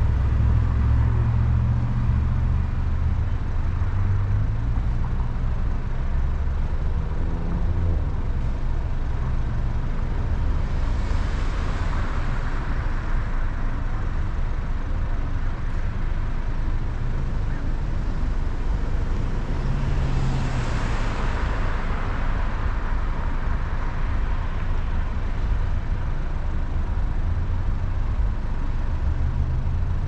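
Car engine idling with a steady low rumble while the car sits parked, with two swells of brighter noise, about eleven and twenty seconds in, like vehicles passing.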